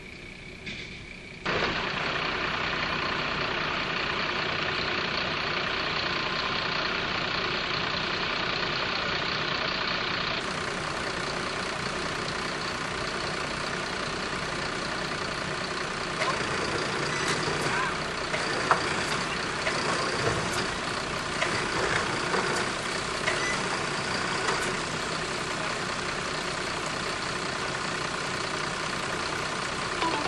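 Flatbed tow truck's engine running steadily while it winches a car up out of a canal, starting suddenly about a second and a half in. Scattered metallic clanks and knocks in the second half.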